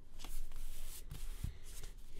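Scratchy rustling and rubbing against drawing paper in short bursts, with a soft low thump about one and a half seconds in.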